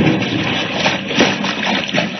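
Old-time radio sound effect of an aircraft splashing down into water: a rush of splashing, churning water as the engine drone dies away, heard through the narrow, muffled sound of a 1940 broadcast transcription.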